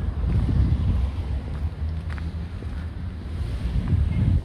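Wind buffeting the camera's microphone, a low, uneven rumble.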